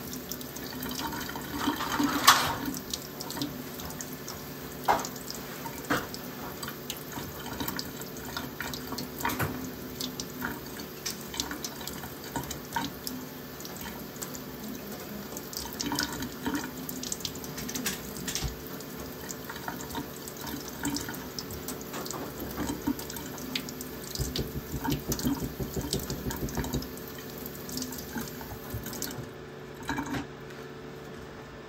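Kitchen faucet running water over a soil baby held in the hands, with splashing and dripping into a stainless steel sink and a louder splash about two seconds in. The tap is shut off near the end.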